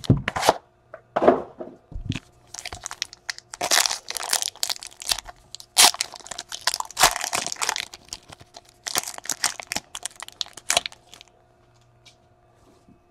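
Foil wrapper of a Panini football card pack being torn open and handled, a long run of sharp crackles and crinkles that stops shortly before the end.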